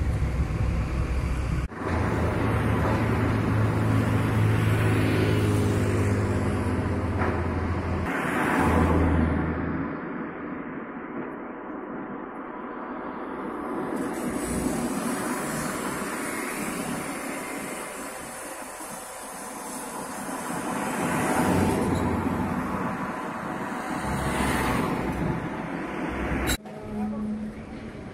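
Outdoor construction-site machinery noise. A large engine runs steadily with a low hum for about the first ten seconds, then a broader rumble of site and traffic noise follows. The sound breaks off abruptly a few times.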